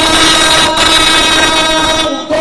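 A man's voice holding one long sung note into a microphone, the pitch held level, with a brief break about three quarters of a second in.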